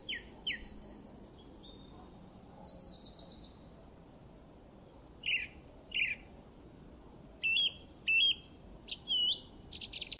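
Small birds singing: quick high trills and falling whistled notes in the first few seconds, then a string of short separate chirps through the second half.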